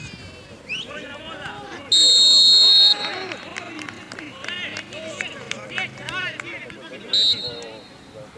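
Referee's whistle: one loud, shrill blast of about a second, then a short blast near the end, over players' shouts across the pitch.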